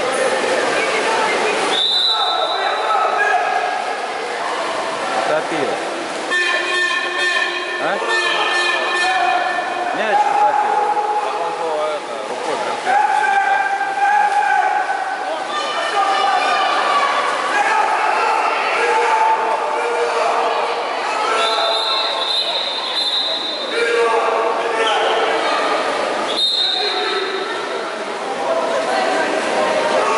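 Players and coaches shouting and calling during a water polo game, their voices echoing in an indoor pool hall, with a few short high steady tones among them.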